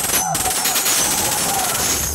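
Electronic dance music blasting from a large DJ sound system in a breakdown with the bass cut out, filled by a rapid rattling, machine-gun-like effect over a hissing wash.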